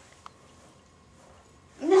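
Mostly quiet, with a single brief faint click about a quarter of a second in, then a voice saying "No" with a laugh near the end.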